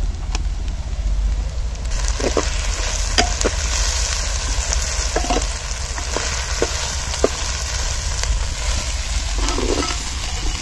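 Chopped shallots and green paste sizzling in oil in a clay pot, the sizzle growing stronger about two seconds in. A metal ladle stirs through them and clicks against the pot now and then.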